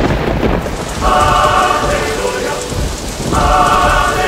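Cartoon fire sound effect: a steady rushing, crackling noise of burning flames. Two drawn-out wailing cries from the characters come through over it, about a second in and again near the end.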